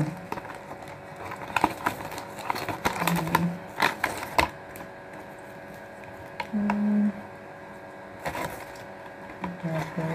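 Handling of earphone packaging: a plastic bag and cardboard box rustling and crinkling, with scattered small clicks as wired earphones and their cable are pulled out. A short hum about three seconds in and another near seven seconds.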